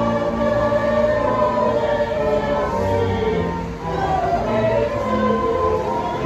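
A choir singing in harmony, several voices holding long notes that change every second or so.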